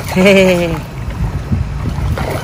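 A short voiced exclamation, falling slightly in pitch, in the first second. Around it, a toddler wading in a shallow inflatable paddling pool makes water sloshing, over a low rumble of wind on the microphone.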